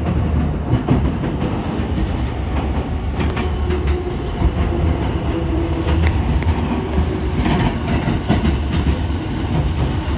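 Running noise of a commuter train heard from inside the car: a steady low rumble with irregular sharp clicks from the wheels passing over rail joints, bunched a few seconds in and again near the end.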